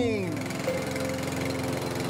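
Gasoline walk-behind lawn mower engine running steadily, with an even, rapid firing rhythm.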